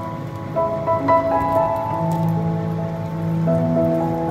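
Background music with clear sustained notes, over a steady sizzle of natto-stuffed fried tofu pouches frying in sesame oil in a pan.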